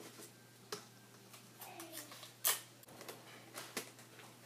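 Clear tape and paper being handled: a few soft clicks and rustles, with one brief louder rasp about two and a half seconds in.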